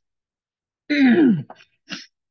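A person's short vocal sound falling in pitch about a second in, like a throat clearing or a grunt, followed by a brief breathy rasp near the end.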